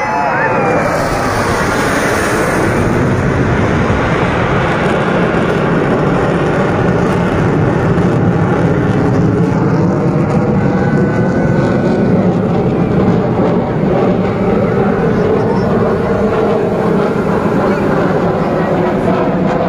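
Fighter jet flying past: a loud, steady jet engine roar, hissier in the first few seconds, with its pitch slowly sliding as it passes.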